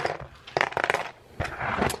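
Small plastic LEGO pieces clicking and clattering on a hard tabletop as they are gathered up by hand, in two short flurries of clicks.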